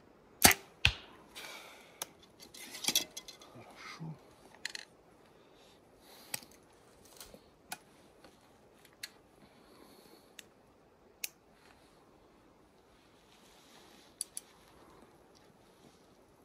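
A compound bow shot: the string is released with a sharp snap, and a second sharp crack follows about half a second later. Then come rustling and scattered small clicks of the bow and arrows being handled, with an occasional click through to the end.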